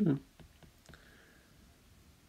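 Faint, light clicks of a stylus tip tapping on a tablet's glass screen while handwriting.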